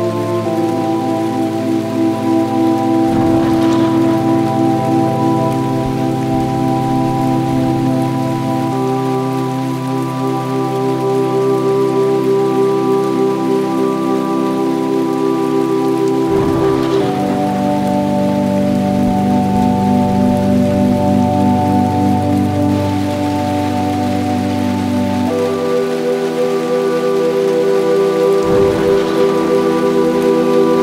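Steady rain falling, under slow ambient music of long sustained chords that change about every eight seconds.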